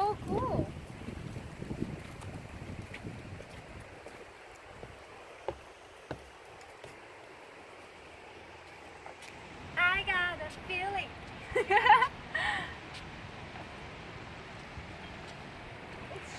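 Steady rush of river water flowing over rocky rapids below a footbridge, with short high-pitched vocal exclamations at the start and again around ten to thirteen seconds in.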